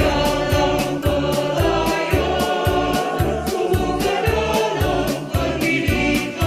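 A group song, a choir singing in Indonesian over instrumental backing with a steady beat.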